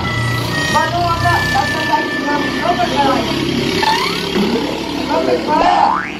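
Indistinct voices talking, with a motor vehicle's engine running as a steady low hum behind them for about the first half.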